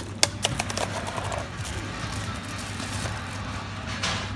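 Shop ambience: a steady low hum with faint background music, and a few sharp clicks of phone handling in the first second.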